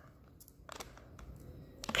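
Foil wrapper of an Instax Mini film pack being peeled and torn open by hand: faint crinkling with a few small crackles.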